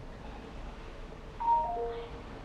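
Faint steady background hiss and hum; about one and a half seconds in, a short chime of three or four clear notes stepping downward.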